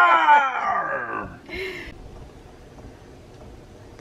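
A man's voice singing the last long note of a song, sliding down in pitch and dying away a little over a second in. A brief short noise follows, then only quiet room sound.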